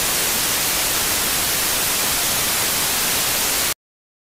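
Television static sound effect: a steady hiss of white noise that cuts off suddenly near the end.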